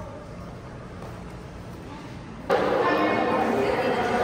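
Quiet hallway room tone, then about two and a half seconds in an abrupt jump to loud, echoing voices and chatter in an indoor pool hall.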